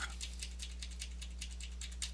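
Computer keyboard keys pressed in a quick, irregular run of light clicks.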